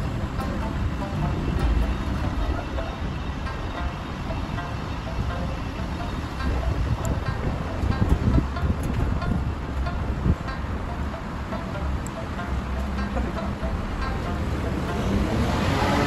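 Steady road traffic rumble with wind on the microphone, under quiet background music; the traffic noise swells near the end.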